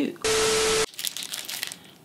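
An edited-in burst of static-like hiss with a steady tone through it, lasting about half a second and cutting in and out sharply, then faint crinkling and rustling of packaging.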